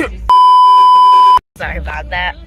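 A steady, loud censor bleep, one pure high tone about a second long, laid over speech and cut off abruptly, followed by a split second of dead silence before the talking resumes.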